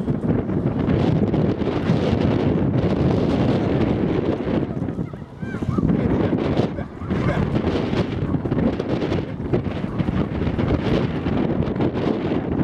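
Wind buffeting the camera microphone in a steady low rumble that dips briefly about five seconds in.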